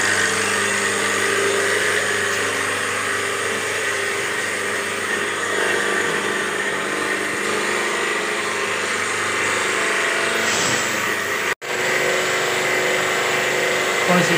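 Kyowa electric high-pressure washer pump, just switched on and running steadily with a constant motor hum. The sound cuts out for an instant near the end.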